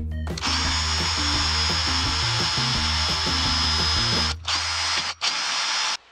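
A small high-speed power tool cutting into the wall of a plastic container: a steady high whine with grinding noise that starts about half a second in and is briefly interrupted twice near the end.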